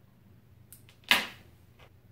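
Handling noise on a clip-on lapel microphone being fiddled with at the collar: a few small clicks, then one sharp knock about a second in with a short scraping tail.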